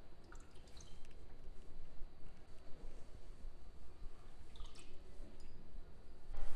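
Coffee liqueur poured from a shot glass into a metal cocktail shaker with ice, faint, followed by a light clink of the shaker's metal parts near the end.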